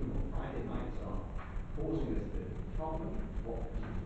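Indistinct speech from people in a meeting room, over a steady low hum.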